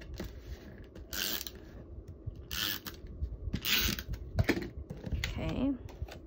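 Tombow Mono permanent adhesive tape runner drawn across cardstock in three short scratchy strokes about a second apart, then a sharp click.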